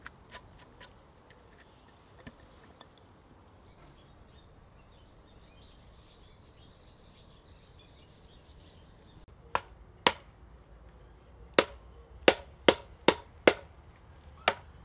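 Carved wooden mallet striking wooden sawhorse legs to drive them into auger-drilled holes. Two blows come about nine and a half seconds in, then a steady run of blows about two and a half a second near the end. Before that there are only faint small clicks.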